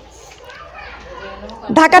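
Speech only: faint background voices in a pause of a sermon, then the preacher's loud voice coming back in near the end.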